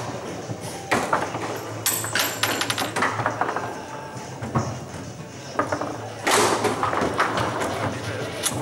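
Foosball table in play: sharp clacks of the ball and plastic players striking and knocking along the steel rods. There is a quick flurry of clacks about two seconds in and a louder burst of knocks just after six seconds, over a murmur of voices in a hall.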